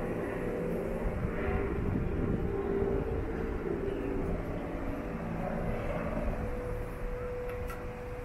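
Distant engine noise: a continuous low rumble and hum that swells a little through the middle and eases toward the end, with a steady tone holding in the second half.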